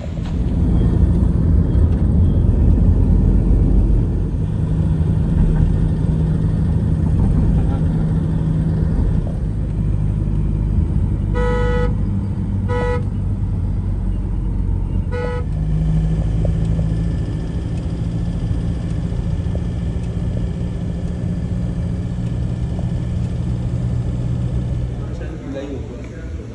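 Road and engine rumble inside a moving car, steady and low. A car horn honks three short times a little before the middle.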